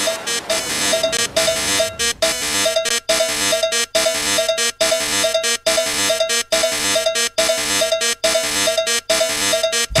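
Electronic dance music from a DJ mix in a breakdown: a bright, buzzy synth riff pulsing over and over, chopped by short rhythmic cuts a little under once a second, with the bass drum dropped out.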